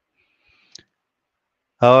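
A pause in speech with one short, faint click about three-quarters of a second in, then a man's voice resumes near the end.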